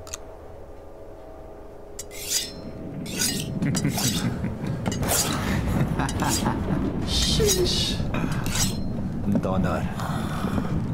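A series of sharp metallic scrapes and clinks, like blades, starting about two seconds in and repeating irregularly over a low rumble that grows louder.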